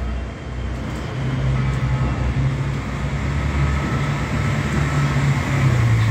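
Steady low engine hum of a nearby motor vehicle over street noise, coming in about a second in and holding steady.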